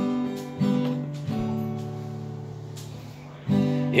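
Acoustic guitar strummed chords as a song's intro: a few strums, then one chord left ringing and fading for about two seconds before another strum near the end.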